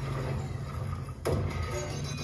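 Action-film soundtrack of music and effects, played through a speaker and picked up in the room, with a low rumble throughout and a sharp crash a little past a second in.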